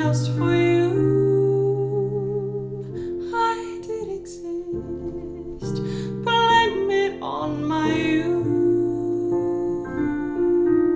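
A woman singing a slow song low in her voice, in the range she finds most comfortable, while accompanying herself with held chords on a digital piano. The singing comes in phrases with held notes, and the piano chords ring on between them.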